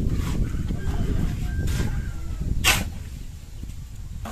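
Low rumble of wind buffeting the microphone, with three short scraping sounds spread through the first three seconds.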